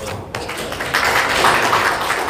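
A room of people applauding after a speech ends, the clapping starting about a third of a second in and getting louder about a second in.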